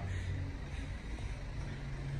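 A steady low hum with no other distinct event.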